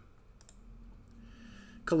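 A faint click about half a second in, over a low steady hum, during a pause; speech starts again at the very end.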